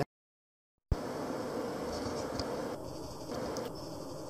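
About a second of dead silence at an edit cut, ending in a sharp click, then steady workshop background noise with the milling machine's spindle not yet turning.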